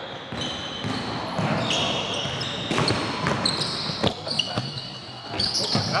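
Live basketball play on a hardwood gym court: sneakers squeaking in short, high squeals, the ball bouncing with a few sharp knocks, and scattered player voices, all echoing in a large hall.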